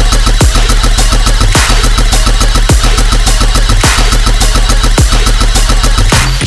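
Dubstep drop: heavy, distorted synth bass chopped into a fast, driving rhythm, with a deep falling sweep about once a second.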